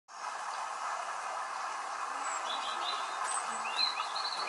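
Small birds chirping, a series of short, high, arched chirps starting about two seconds in, over a steady background hiss.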